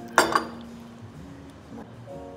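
A stemmed drinking glass clinks once against a ceramic saucer about a quarter-second in, with a short ring after.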